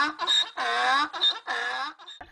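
A donkey braying in a run of short pitched calls, about three a second.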